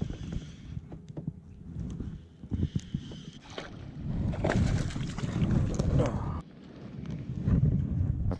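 Water sloshing and splashing beside a fishing kayak as a bass is reeled in and netted, with wind on the microphone and scattered knocks of the net and gear. It grows louder in the middle and drops suddenly a little after six seconds in.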